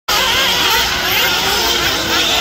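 Several 1/8-scale RC off-road buggies running on a dirt track, their motors whining together, the pitches rising and falling as the cars speed up and slow down.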